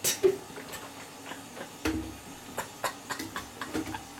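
Scattered light clicks and knocks of a plastic mouthwash bottle and its cap being handled at a bathroom sink, with one heavier knock about two seconds in.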